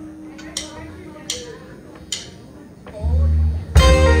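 Country band starting a song live: three sharp clicks about three-quarters of a second apart, a drummer's count-in, then about three seconds in the bass guitar, electric guitar and drums come in together, with a loud accent just before the end.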